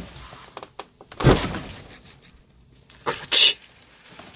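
A door being opened by its metal lever handle: a click as the latch goes, a heavy thump about a second in, then a short, sharp hissing burst about three seconds in.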